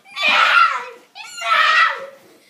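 A child screaming twice in quick succession, high-pitched, each scream close to a second long.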